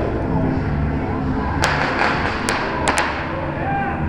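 Firecrackers going off: four sharp bangs over about a second and a half, the last two almost together.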